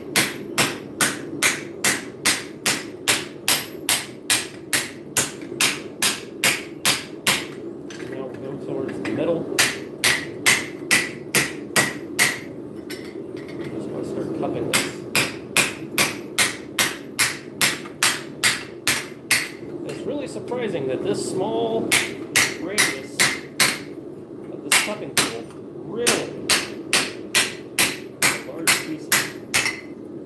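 Runs of hammer blows on a sheet of metal laid over a round dishing tool, about two to three strikes a second with short pauses between runs: the sheet is being dished into a bowl.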